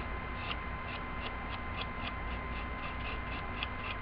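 Steady low electrical hum and hiss with two thin, steady high whines, and over them a run of soft, quick ticks, about three or four a second.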